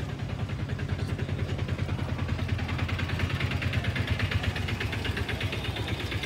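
Auto-rickshaw engine idling with a rapid, steady putter, growing a little louder toward the end.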